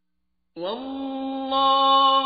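Male qari reciting the Quran in the melodic tajweed style. After about half a second of silence, the voice enters with a short upward glide and holds one long drawn-out note, growing louder about a second and a half in.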